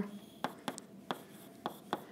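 Chalk writing on a blackboard: about six short, sharp taps and strokes of the chalk, irregularly spaced.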